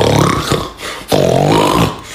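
A comic non-speech vocal sound in two parts: a low buzzy burst at the start, then a pitched, wavering tone that bends upward from about a second in.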